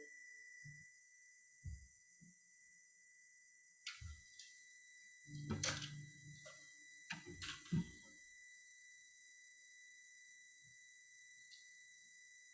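Quiet room tone with a faint steady high whine, broken by a few soft knocks and thuds between about two and eight seconds in.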